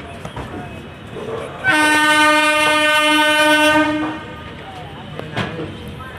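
An Indian Railways train horn sounds one long, steady blast lasting a little over two seconds, starting just under two seconds in.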